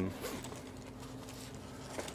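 Zipper on a soft padded carrying case being worked by hand: a brief faint rasp in the first half second, then quiet handling of the case's fabric.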